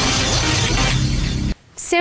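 End of an electronic-music intro jingle with a dense, noisy crash-like effect that cuts off suddenly about one and a half seconds in.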